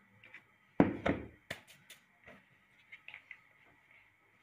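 Two heavy thumps about a second in, then a few sharp knocks, from dough and a wooden rolling pin being handled on a kitchen counter.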